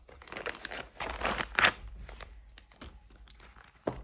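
Clear plastic zip-lock bag crinkling and rustling as a fabric pencil case is pulled out of it by hand, loudest about a second and a half in.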